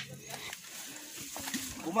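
A person's low, steady hum that stops about half a second in, then faint wordless vocal sounds near the end.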